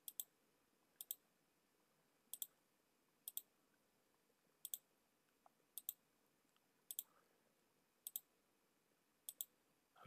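Computer mouse button clicks, each a quick double click of press and release, about nine of them spaced roughly a second apart, as a parameter is right-clicked and then published from the context menu, over and over. Near silence between the clicks.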